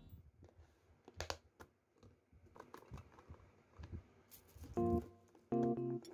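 Scattered light clicks and taps of a clear plastic bead organizer box being handled and its snap latch worked, then a few short keyboard notes of background music near the end.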